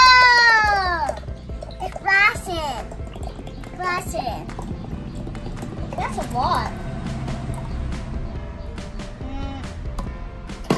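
A child's long wordless exclamation like 'whoa', its pitch rising and then falling, followed by a few short high vocal sounds from children.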